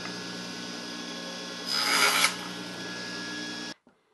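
A power saw running with a steady hum. About two seconds in, a short, loud burst of cutting noise as it cuts through the thin wooden insert strip. The sound stops abruptly just before the end.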